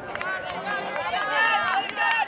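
Several voices calling and shouting across an open field, overlapping one another, as players and sideline supporters shout during a point of ultimate frisbee.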